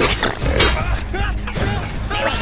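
Film sound-design robot mechanics: metallic servo whirs and creaks with short gliding electronic squeals, over a steady low rumble.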